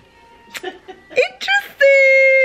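A woman's voice: she says "interesting" and then holds a loud, whiny vocal sound at one steady pitch for well under a second, starting near the end.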